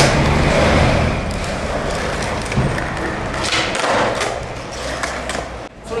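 Skateboard wheels rolling over paving, then a knock about two and a half seconds in and a louder clatter of the board about a second later: the tail pop and landing of a half cab flip.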